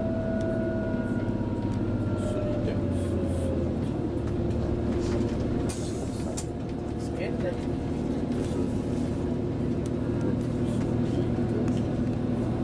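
Cabin noise inside a regional express train under way: a steady rumble with a low hum of several steady tones. A higher whine falls slightly and fades out in the first few seconds, and a few short clicks come around the middle.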